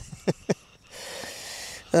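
Camera being handled: a few sharp knocks in the first half second, then a soft hiss for about a second.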